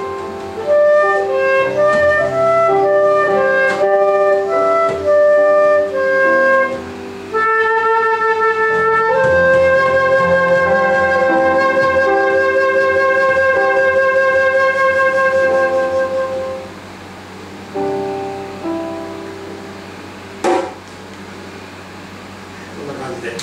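Flute playing an improvised melody over sustained keyboard chords, holding one long note through the middle. Near the end the flute drops out and the music goes quieter, with a single sharp knock shortly before the end.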